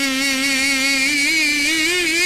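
A man's voice holding one long chanted note with a wavering vibrato, its pitch rising a little about a second in.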